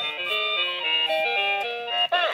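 LeapFrog Alphabet Pal caterpillar toy's speaker playing an electronic tune: a simple melody of beeping notes stepping up and down, a little high-pitched on fresh batteries.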